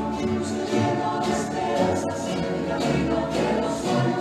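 A rondalla performing: many voices singing together in chorus over strummed guitars and an upright bass.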